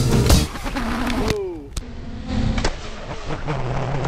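Background music ends in the first half second. Then an FPV racing quadcopter's brushless motors whine, their pitch sliding down and up with the throttle, with a few sharp clicks.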